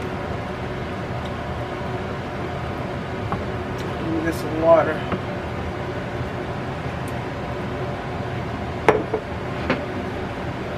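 A jar set down on a countertop with two sharp knocks near the end, over a steady background hum.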